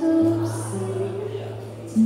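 Live acoustic pop-jazz music: a woman singing held notes into a microphone over acoustic guitar accompaniment, with a low note sustained underneath.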